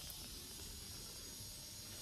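Quiet outdoor background between sentences: a steady high-pitched hiss with a faint low rumble underneath.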